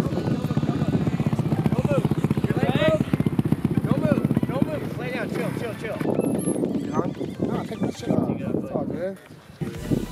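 An injured dirt-bike rider groaning and crying out in pain, his leg snapped below the knee in a crash. Under the cries a motorcycle engine idles close by with a fast, even putter that is strongest in the first half.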